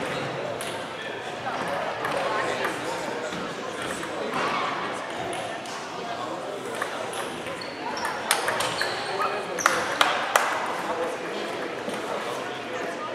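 Celluloid-type table tennis ball being hit back and forth in a rally, a quick run of sharp clicks off bats and table over about two seconds, two-thirds of the way in. Voices murmur in a large hall.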